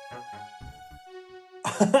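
Soft background music with long held notes under a few short, brief sounds from a man's voice. Then his speech starts loudly near the end.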